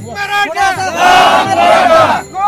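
A crowd of men shouting protest slogans together, loud overlapping voices with a short break just after the start.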